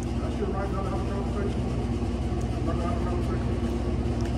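Steady low background hum with faint, muffled voices in the middle.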